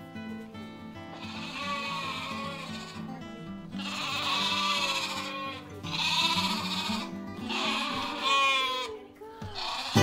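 Sheep bleating, about four long bleats in a row, over an acoustic guitar music track.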